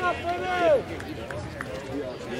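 Spectators talking and calling out close to the microphone, the words unclear, with one drawn-out voice about half a second in.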